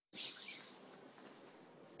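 Soft hiss of noise through a video-call microphone, starting a moment in and fading away within about a second.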